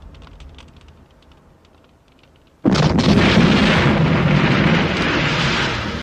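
Faint clicks, then about two and a half seconds in a sudden loud explosion: a Tiger tank's main-gun shell blasting open an armoured bank door. The blast noise and flying debris carry on for about three seconds, easing slightly near the end.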